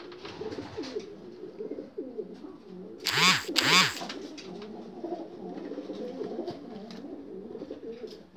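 Domestic pigeons cooing steadily in a loft. About three seconds in, two loud short bursts of noise stand out above the cooing, half a second apart.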